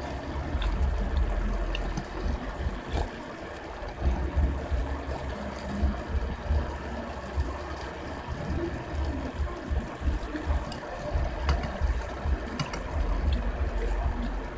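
Eating sounds: ramen noodles slurped and chewed, with a few light clicks of spoon and fork against the bowl, over a low rumble that comes and goes.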